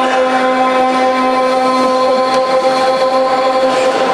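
Call to prayer (adhan): a man's voice holding one long, steady sung note, which ends near the end.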